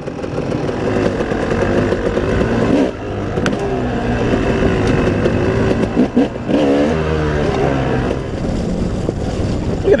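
Dirt bike engine running under load on a trail, the throttle rising and falling with a brief dip about three seconds in, heard close up from the bike's onboard camera along with wind rush.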